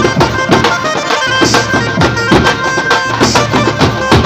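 Live band-party music: steel-shelled dhol and bass drums beating a fast, steady rhythm under a sustained melody line.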